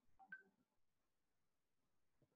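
Near silence, with a few faint, very short sounds in the first half second.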